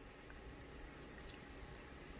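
Near silence: room tone with faint handling of a crochet hook and yarn.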